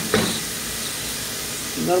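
Chopped onion, green pepper and herbs sizzling steadily in hot olive oil in an aluminium pressure cooker, with a couple of short sounds from a silicone spatula stirring the pan at the start.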